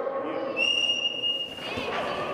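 A sports whistle blown once, a single steady high blast of about a second starting half a second in, the start signal for a relay race in a school gym. Crowd voices carry on underneath.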